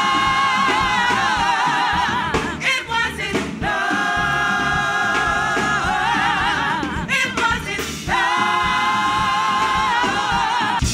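Gospel vocal group singing in harmony, holding three long chords with shorter, moving phrases between them.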